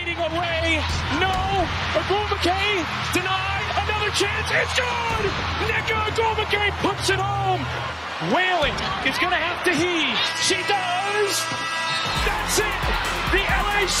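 Basketball TV broadcast sound: a commentator calls the last seconds of a close game, a missed fadeaway and then the winning basket, over background music.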